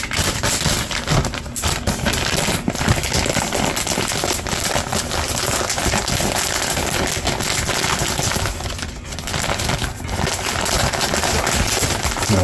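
Clear plastic filter-patch grow bag full of brown rice crinkling and crackling as its top is folded along the creases and rolled down tight, in dense, irregular crackles throughout.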